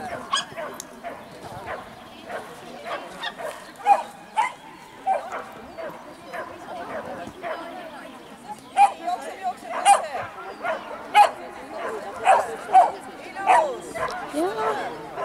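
A dog barking in short, sharp barks, a few spread through the first half and then coming in quick runs through the second half.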